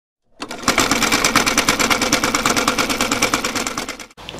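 Sewing machine running at speed, a rapid even clatter of stitches over a steady motor hum, starting about half a second in and fading out near the end.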